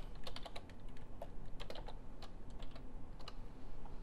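Typing on a computer keyboard: a string of irregular keystrokes, coming in quick clusters with short gaps between them.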